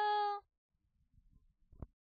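A woman's unaccompanied singing voice holding a long, steady note that stops about half a second in. A quiet pause follows with only faint low noises and a brief short sound near the end, likely a breath before the next phrase.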